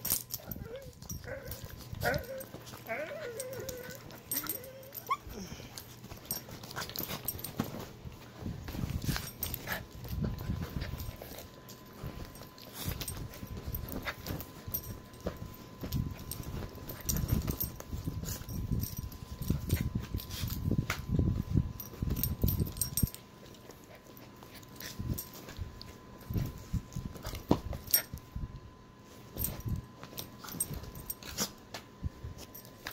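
Small dog whimpering and whining while it is handled in play on its back, with a few wavering cries in the first few seconds. Then comes irregular scuffling and rustling from the dog and hand moving against the bedding.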